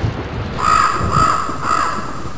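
A crow cawing three times in quick succession, over a low rumble.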